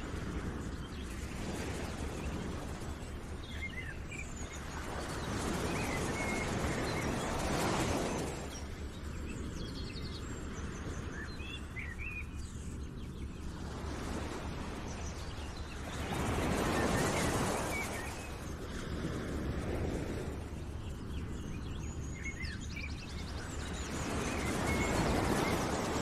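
Outdoor nature ambience: a steady rushing noise that swells twice, with small bird chirps scattered through it.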